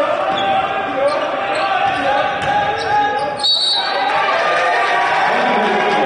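Live basketball play in a large gym: the ball bouncing, shoes squeaking on the hardwood court, and voices from the players and the crowd, with a brief high tone about three and a half seconds in.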